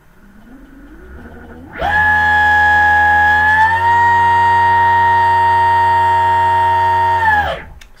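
Loaded IPM electric motor on a 24-MOSFET PV VESC controller spinning up with MTPA enabled. It starts as a faint rising whine, then becomes a loud steady whine with many overtones at full throttle, around 27,000–28,000 eRPM. The pitch steps up a little partway through as speed rises, and the whine stops shortly before the end.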